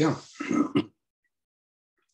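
A man's voice trailing off at the end of a spoken sentence, then complete silence from about one second in.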